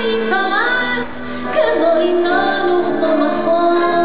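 A woman singing in Hebrew into a microphone with live band accompaniment, holding long notes.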